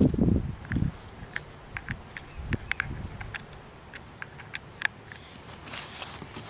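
Small plastic gadgets and a USB cable being handled and plugged together: a low rustling bump in the first second, then scattered light clicks and taps of plastic cases and connectors.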